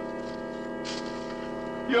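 A sustained chord of background music score, several steady notes held without change.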